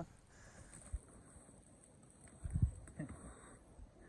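A few footsteps on a leaf- and twig-strewn forest floor in a quiet wood: a light click about a second in, then a heavier low thud or two about halfway through.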